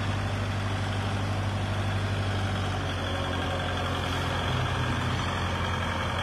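Kubota L5018SP tractor's diesel engine idling steadily with an even low hum.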